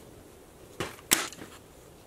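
Short cedar boards being handled and set against the edge of an MDF base on a wooden workbench: a few light wooden clacks, the sharpest a little over a second in.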